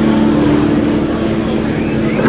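A live rock band's held, droning chord of sustained guitar and keyboard tones, steady under a wash of noise from the hall.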